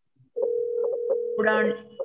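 A steady electronic tone, like a telephone dial tone, comes in about half a second in and holds, heard through the video call's audio with a few faint clicks; a voice joins it near the end.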